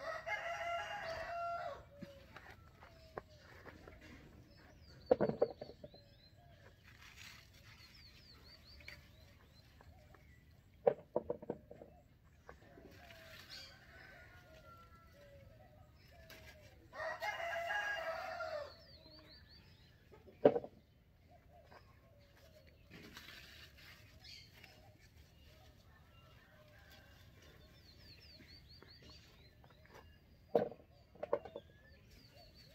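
A rooster crowing twice, at the start and again about seventeen seconds in, each crow about two seconds long. In between come a few sharp snaps and rustles as cucumbers are cut from the vine.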